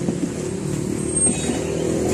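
A car engine running with a steady low rumble.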